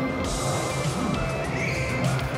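Music playing, with a short, high, rising sound about one and a half seconds in.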